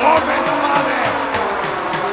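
Industrial music played live: a drum machine's kick beat at about four a second under a dense, screeching metal noise from an angle grinder.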